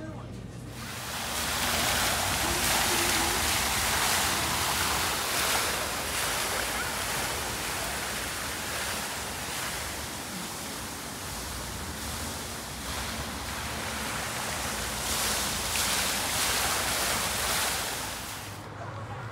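Fountain water jets splashing into a stone basin: a steady rushing hiss that starts about a second in and cuts off near the end.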